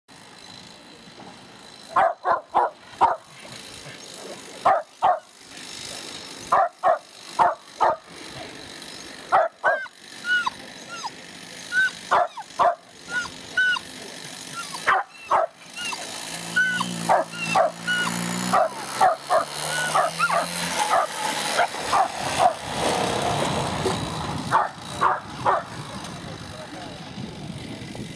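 Border collie–kelpie cross barking over and over in short excited volleys, with high whines between some barks, as it is held back eager to chase the lure. About halfway through a low machine hum comes in, followed by a rising rushing noise.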